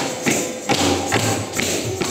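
Kathak tatkaar footwork: bare feet stamping on a wooden stage in a steady rhythm, a little over two stamps a second, with ghungroo ankle bells jingling on each stamp over background music.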